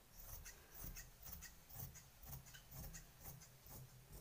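Scissors cutting through cotton blouse fabric: a faint run of short, irregular snips and cloth rubbing as the blades work along the chalk line.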